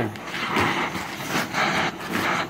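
Oxy-fuel torch flame hissing against a 3/8-inch steel bar as it heats it for bending, the hiss swelling and easing in several uneven surges.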